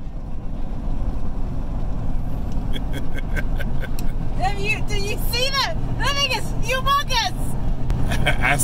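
Steady low road noise of a car driving on a highway, heard from inside the cabin. Voices join over it about halfway through.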